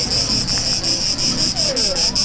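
An insect chirping: a high, fast and even pulsing trill.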